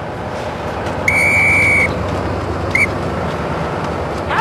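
A pea whistle blown by a rig worker as a signal to the derrick crew: one long steady blast about a second in, then a short toot near three seconds, over a steady low rumble.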